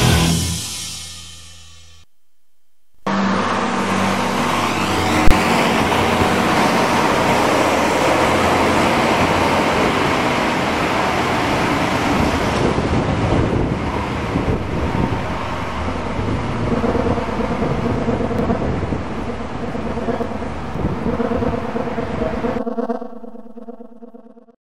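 A boogie-rock song fades out, and after a second of silence comes steady road and traffic noise of a bus driving away down a street, with one sharp knock a couple of seconds after it starts. Near the end a low steady hum comes in as the road noise fades.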